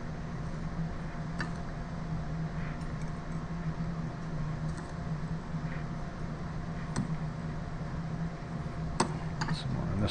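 A metal spoon clinking lightly against ceramic dishes as a crumb topping is spooned onto tomatoes: a few scattered clinks, the sharper ones near the end, over a steady low background hum.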